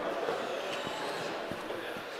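Steady background noise of a large indoor climbing hall, with a couple of soft knocks of feet landing on climbing volumes and padded floor during jumps.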